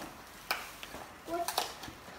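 Cardboard box of washing soda being handled and tipped into a plastic-lined bin: a few sharp knocks and a short rustle of powder. A child says "in" about halfway through.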